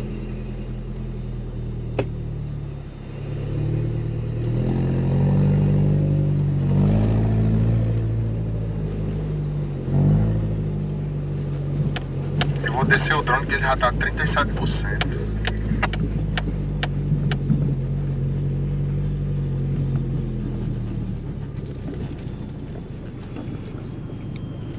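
A 4x4's engine heard from inside the cabin while driving on loose sand: it revs up a few seconds in, drops back briefly around the middle, holds under load, then eases off near the end. A run of sharp clicks or knocks sounds partway through.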